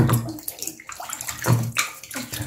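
Bathwater sloshing and splashing around a foot and hand moving in a bathtub, with louder splashes at the start and again about a second and a half in.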